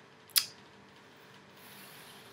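Straw hat rustling as hands adjust it on the head: one short scratchy rub near the start, then only faint room hiss.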